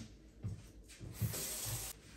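Kitchen tap running briefly in the second half, water splashing as hands are rinsed under it. A few soft low thuds come before and during it.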